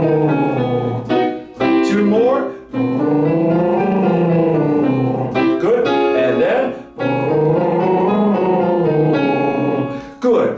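A man's voice doing lip trills (lip buzzes) up and down a short scale, three times, with short phrases of piano notes between the runs giving the next pitch. It is a singer's warm-up exercise, each run stepped up higher.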